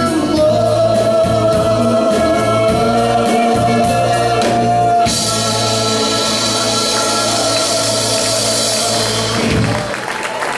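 Live doo-wop vocal group with a rock backing band, holding the song's final sung chord over bass and drums. About halfway through, a cymbal wash joins the held note, and the music ends just before the close.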